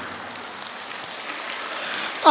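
An audience clapping: steady, even applause with no voices over it.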